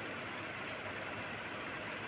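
Steady faint background hiss with two brief, faint scratches of a pen writing on paper about half a second in.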